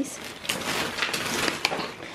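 Thin plastic shopping bag rustling and crinkling as a hand rummages inside it, with a few sharp crackles.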